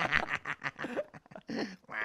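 A man laughing in short bursts.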